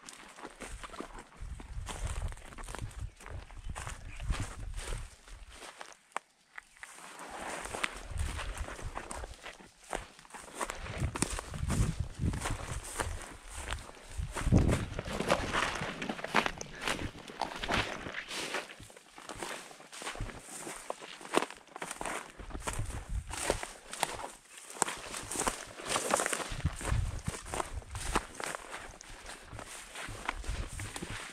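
Footsteps through dry grass and brush, with stems and branches rustling and snapping against legs and clothing at an uneven walking pace, pausing briefly about six seconds in.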